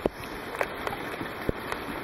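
Heavy rain falling steadily, with a few sharp taps now and then.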